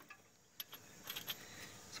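Faint metallic clinks of hand wrenches being handled while hunting for the right size, a few short clicks about half a second to a second and a half in.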